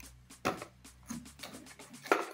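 Hands handling a cardboard box and its paper inserts: a string of light clicks and rustles, the loudest about half a second in.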